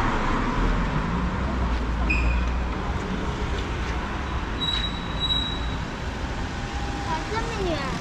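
City street traffic at an intersection: a steady wash of road noise with a low engine rumble through the first few seconds, and a couple of short high-pitched beeps around the middle.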